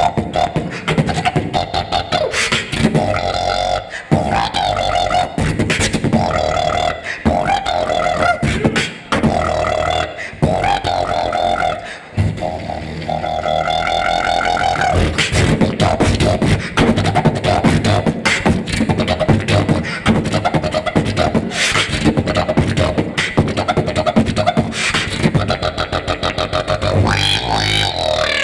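Solo beatboxing into a handheld microphone: a dense run of mouth-made kick, snare and hi-hat sounds, with held hummed notes layered over the beat in the first half.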